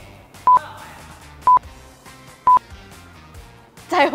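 Three short electronic beeps of one steady pitch, evenly spaced about a second apart, a countdown-timer sound effect for a quiz question, over quiet background music.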